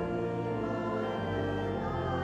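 A choir humming a hymn without words, with sustained chords from an accompanying instrument.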